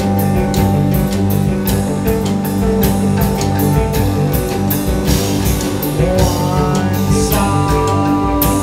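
Live rock band playing: distorted electric guitars and bass over a drum kit keeping a steady beat.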